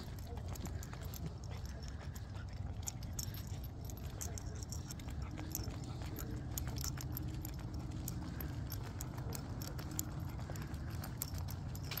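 A person and a small dog walking on a concrete sidewalk: light, irregular ticks and taps of footsteps and claws over a low, steady rumble.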